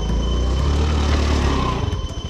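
Motor scooter's engine revved hard for nearly two seconds as the scooter lurches forward, falling off just before the end.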